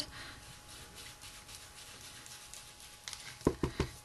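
Ink blending tool with a foam pad being dabbed and rubbed over a small piece of cardstock, a faint soft scuffing, with a few quick taps a little after three seconds in.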